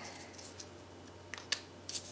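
A few faint, sharp clicks and taps from fingers handling thin cardboard match-striker strips, coming in the second half over a quiet room hum.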